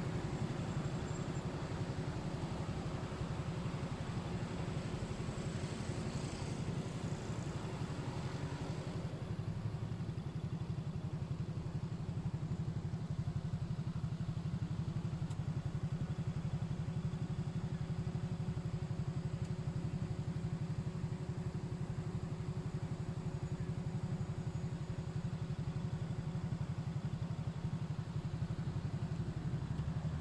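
Motorcycle engine idling steadily, heard from close behind the rider on the pillion, with a light hiss over the first nine seconds or so.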